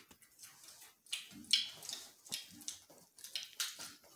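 People chewing Pringles potato crisps: a run of short, uneven crunches.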